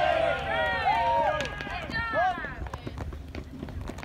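Several voices yelling and cheering at once, loudest in the first two seconds and fading after, with a few sharp claps among them: players and spectators reacting to a batted ball.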